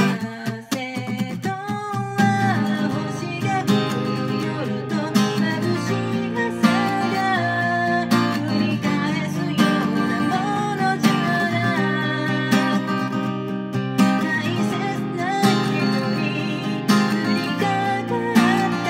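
Cutaway acoustic guitar strummed in a steady, busy rhythm, with a voice singing the melody over it from about two seconds in.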